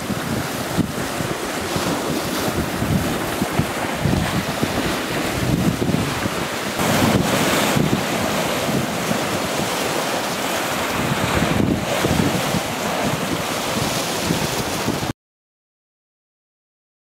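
Waves breaking and washing against a rocky shore, mixed with strong wind buffeting the camcorder's built-in microphone.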